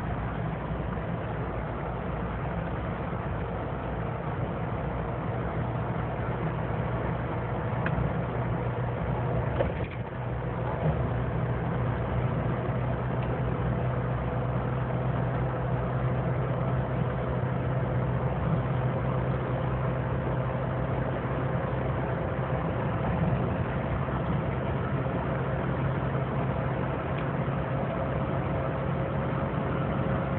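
Car engine and road noise heard from inside the cabin while driving: a steady low hum with a faint steady tone above it, briefly dipping about ten seconds in.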